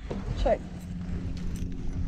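A woman says "check" over a steady low hum inside a car cabin, with rustling and handling noise from a bag and clothing being moved about.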